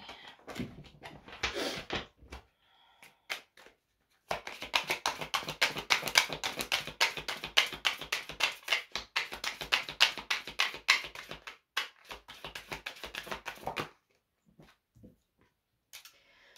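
A deck of oracle cards shuffled by hand: a few soft rustles at first, then a fast run of card clicks from about four seconds in until about fourteen seconds in.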